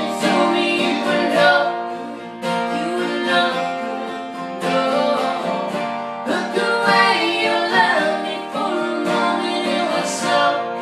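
Two acoustic guitars strummed together, accompanying a woman singing a country-pop song.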